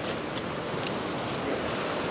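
Steady rush of sea surf on a pebble beach, with a few faint clicks of pebbles underfoot.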